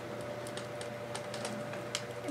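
A few faint, irregular clicks from a segmented plastic twist toy being bent and twisted by hand.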